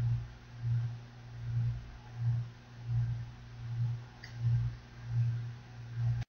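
A low background hum that swells and fades steadily, about four pulses every three seconds, over faint hiss.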